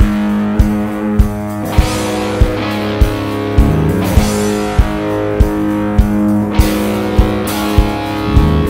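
Instrumental passage of a studio-recorded rock song: guitars and bass holding chords over a steady drum beat, with a thumping beat about every 0.6 seconds.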